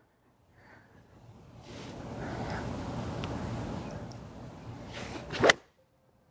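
A six iron strikes a golf ball once, a single sharp crack near the end, struck a little thin by the golfer's own account. Before it, a rushing noise swells and fades for a few seconds.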